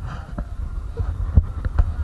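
Low steady rumble of a car driving slowly along a road, with irregular dull thumps a few times a second.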